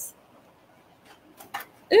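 Near silence: room tone, with a couple of faint light clicks, then a woman's voice exclaiming "Ooh!" at the very end.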